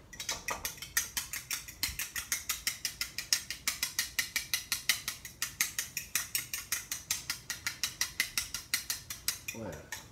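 A metal fork beating egg whites in a ceramic bowl, its tines clicking against the bowl in a quick, even rhythm, several strokes a second. The beating is whipping the whites to a foam.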